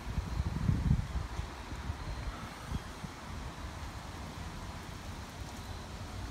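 Wind on the microphone of a handheld camera outdoors: a low rumbling buffet, strongest in about the first second, then a steady low hiss.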